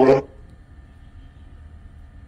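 Spirit box radio sweeping through stations: a low, steady static hiss with a brief, loud clip of a voice right at the start. The investigator takes the clip for a spirit saying 'agora' ('now').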